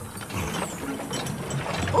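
A steady mechanical clicking rattle, as from a cartoon sound effect.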